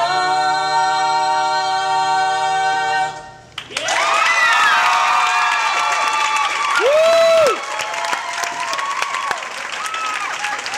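A barbershop quartet of young male voices sings a cappella, holding its final chord for about three seconds before cutting off together. After a brief pause an audience breaks into applause and cheering, with one loud cheer about seven seconds in.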